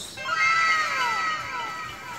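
Edited-in sound effect: a cluster of high pitched tones sliding down in pitch together over about a second and a half.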